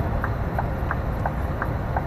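Steady engine and road rumble inside a Scania lorry's cab at motorway speed, with a faint, regular ticking over it.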